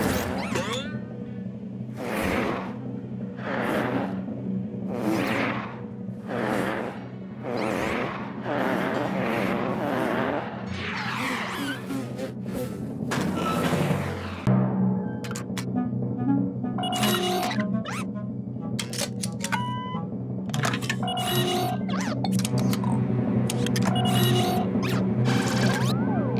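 Cartoon whooshing sound effects, one swell about every second and a half, over background music for the first half. After that, background music alone.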